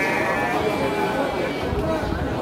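A sheep bleating once at the start, a high, wavering call that fades within about half a second, over crowd chatter.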